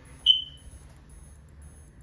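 A single short, high electronic beep that fades away over about half a second.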